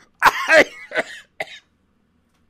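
A man coughing and clearing his throat in a few short bursts, the first the loudest, as he gets choked up with emotion.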